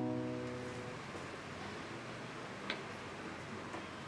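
The last electric piano chord of the background music dying away over the first second, then faint room noise with a light click a little under three seconds in.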